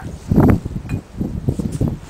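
Threaded half-inch galvanized steel pipe fittings being twisted by hand: a loud rough scrape about half a second in, then a run of quick creaks and clicks as the joints turn on their threads.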